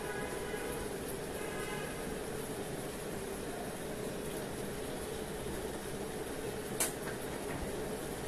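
Ceiling fan running steadily, a constant hum with a rush of moving air, and a single sharp click near the end.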